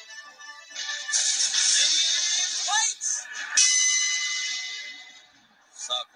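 Soundtrack of a television show: music, then from about a second in a loud, noisy burst of sound effects with a brief rising sweep in pitch. It ends in a held tone that fades out shortly before five seconds in.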